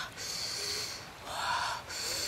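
A woman breathing out hard through pursed lips, twice, each breath lasting under a second.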